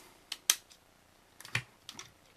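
Plastic parts of a Transformers Sentinel Prime figure clicking as a back panel is closed and pressed into its slot: a few scattered sharp clicks, the strongest about half a second in, and a small cluster of clicks around a second and a half in.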